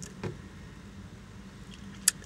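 Low, steady background hum inside a car cabin during a pause in speech, with a brief faint sound about a quarter second in.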